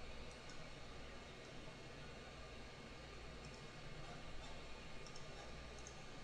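Faint computer mouse clicks, a few scattered ticks, over a quiet steady hum and hiss.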